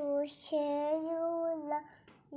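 A toddler girl singing: a short note, then one long held note in a high child's voice lasting just over a second.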